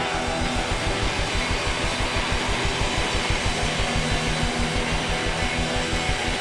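Live rock band playing loudly: electric guitars over a drum kit beating a fast, even rhythm, after a sharp hit right at the start.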